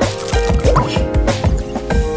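Upbeat background music with a steady beat of low thumps under held notes, playing over an animated title card.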